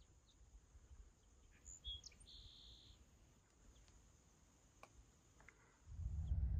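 Near silence: faint open-air ambience with a few scattered short bird chirps and a brief buzzy call about two and a half seconds in.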